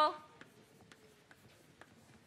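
Faint taps and scratches of chalk writing on a blackboard.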